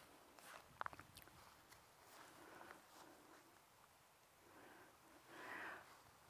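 Near silence, with a faint click a little under a second in and a soft faint hiss near the end.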